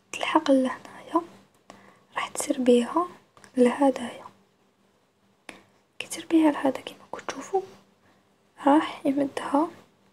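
Speech only: a voice talking French in short phrases, with pauses between them.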